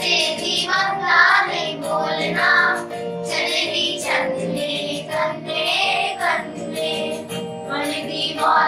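A group of schoolchildren singing a Kashmiri folk song together, accompanied by held chords on an electronic keyboard.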